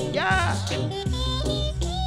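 Reggae music playing from a vinyl record: a sung vocal line over a deep, steady bassline.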